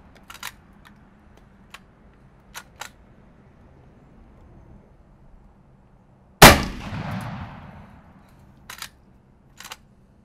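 Winchester Model 1887 10-gauge lever-action shotgun being cycled and fired: a few sharp metallic clacks of the lever action, then one loud shot from a reduced black-powder load about six and a half seconds in, with a trailing echo. The lever clacks again twice near the end.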